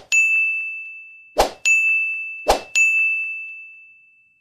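Three animated-button sound effects, each a short click followed by a bright bell-like ding that rings and fades. They come about a second and a quarter apart, and the last ding fades out near the end.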